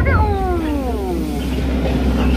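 A long vocal call sliding steadily down in pitch for about a second, over the steady low hum of the boat's motor.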